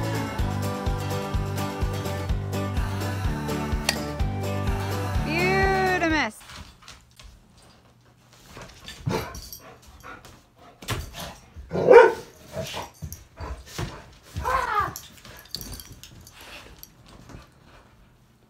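Background music with a steady beat that cuts off abruptly about a third of the way in. Then a dog barks loudly, once and again shortly after, between scattered knocks and scrapes of a broom being worked behind a couch to reach the dog's toy.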